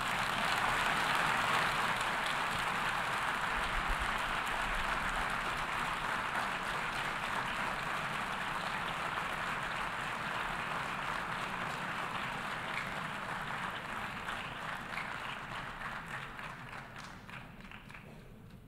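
A large assembly of delegates applauding, greeting the adoption of a resolution. The applause starts strong and slowly fades away over the whole stretch.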